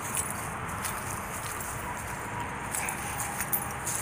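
Steady outdoor background noise with faint scattered ticks and a brief faint tone about two seconds in.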